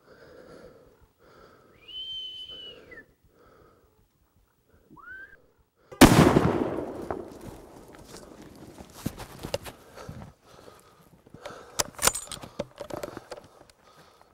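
A single gunshot about six seconds in, its report rolling away in a long echo, fired at a six-by-six bull elk that drops. Before it come two short high whistle-like calls, and after it scattered small clicks and rustling.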